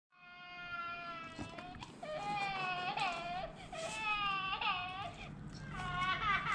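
Toy crying baby doll playing a recorded infant cry: long wailing cries, about four of them, each breaking off and starting again with a wavering pitch.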